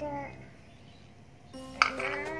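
Gentle background music with held melodic notes that fade out; near the end, a single sharp clack as a small bowl of paint is set down on a tiled floor.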